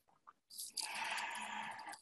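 A second or so of quiet, then a soft intake of breath from the speaker, about a second long, just before speech resumes.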